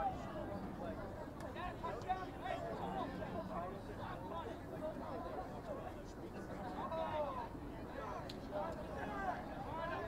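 Indistinct voices of rugby players and spectators calling out and chattering across the field, with no single voice standing out, over a steady low rumble.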